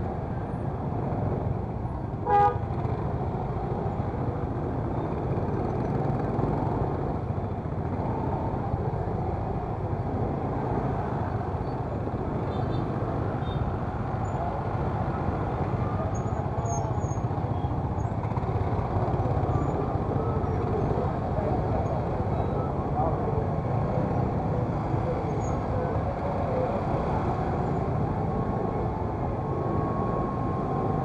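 Steady traffic din of idling and creeping cars and motorcycles in a slow jam, with one short vehicle horn toot about two seconds in.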